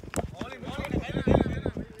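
A cricket bat striking a tennis ball with one sharp knock just after the start, followed by men's voices calling out.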